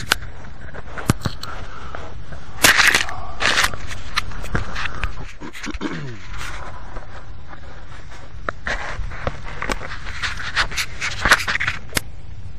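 Handling noise on the small onboard camera's built-in microphone as the crashed RC helicopter's camera rig is picked up and carried: fingers and clothing rubbing and scraping over it, with irregular clicks and knocks, loudest about three seconds in and again near the end.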